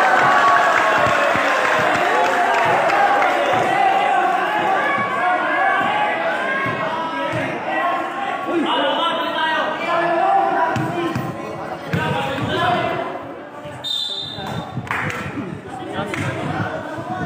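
Basketball bouncing on a concrete court at irregular intervals, under the talk and shouts of many spectators. The voices are busiest in the first ten seconds and thin out towards the end.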